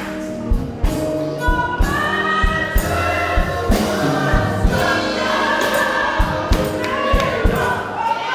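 Church congregation singing a gospel song together, with live accompaniment and a steady beat.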